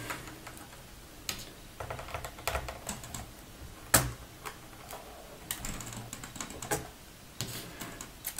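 Scattered light clicks and ticks of a small Phillips screwdriver backing out the screws that hold a laptop keyboard, with hands brushing the plastic keys. One sharper click about four seconds in.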